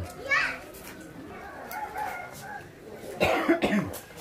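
People's voices, including a child's, with a cluster of short coughs about three seconds in.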